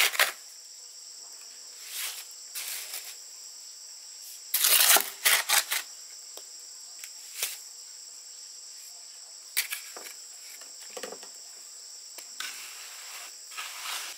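Steady high-pitched chirring of insects, broken by scattered short scrapes and knocks. The loudest of these is a cluster about five seconds in.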